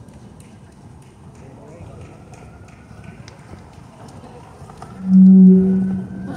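A loud, steady low-pitched tone starts about five seconds in, holds for about half a second and then fades, over faint outdoor crowd noise with scattered small clicks.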